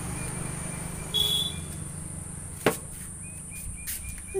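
Outdoor rural ambience with a steady high insect drone. A brief high-pitched tone sounds about a second in, and a single sharp click comes near the middle.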